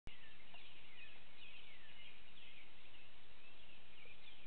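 Birds singing, a repeated down-slurred whistle about once a second, over a steady background noise.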